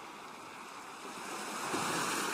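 Ocean surf: a steady wash of waves, swelling toward the end as a wave comes in.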